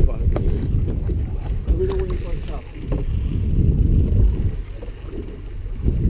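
Wind buffeting a GoPro camera's microphone on an open boat, an uneven low rumble that dips for a moment about halfway through, with a few light clicks of handling. A short laugh comes at the very start.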